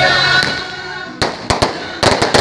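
Sung religious music over the crowd fades out in the first half second; then firecrackers go off, three sharp bangs in quick succession in the second half.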